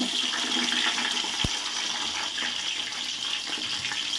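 Sliced onions and green chillies sizzling as they are tipped into hot oil in a pot: a steady hiss, with one brief tap about one and a half seconds in.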